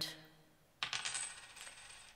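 Coins clinking together as they are dropped or poured, starting suddenly about a second in and jingling on for about a second before fading.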